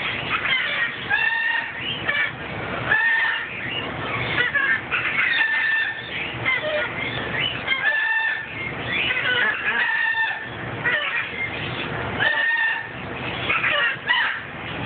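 Hyacinth macaw calling in a steady run of short squawks and chatter, with short held notes coming back every two seconds or so, while its beak works at a plastic measuring cup.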